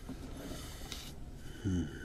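A soft breath drawn in through the nose, then near the end a short hummed "mm" from a man as he starts to hum.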